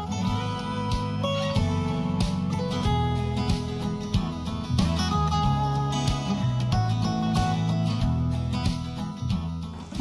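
Background music led by plucked acoustic guitar, with notes and chords changing every second or so.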